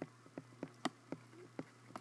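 Light taps and clicks of handwriting on an iPad touchscreen as digits are written, a quick irregular run of about a dozen small clicks, over a low steady hum.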